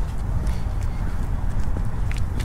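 Low, uneven wind rumble on a handheld camera's microphone outdoors, with a few faint clicks near the end, such as footsteps on pavement.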